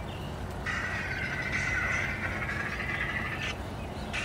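A buzzy electronic sound effect from a costume toy's small speaker, starting a little under a second in and holding steady for nearly three seconds before cutting off.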